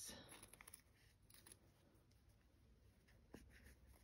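Near silence: faint rustling of embroidered fabric scraps being handled, with a single soft click about three seconds in.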